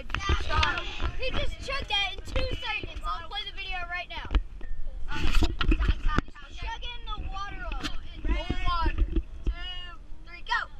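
Several children's voices talking and calling out over each other, with a steady low rumble from the moving limousine underneath.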